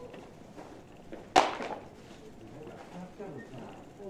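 A single loud, sharp clack about a second and a half in, ringing briefly before it dies away, over faint footsteps on pavement and faint distant voices.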